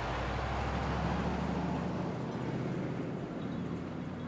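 Hummer H2 SUV driving by, its V8 engine giving a steady low hum that starts suddenly and eases off a little toward the end.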